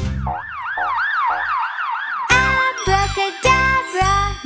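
Cartoon siren sound effect: a fast warbling whoop, about four swoops a second, for about two seconds. Then children's song music with a steady beat comes back in.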